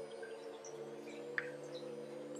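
Faint steady hum made of several low tones, with a single faint tick about one and a half seconds in.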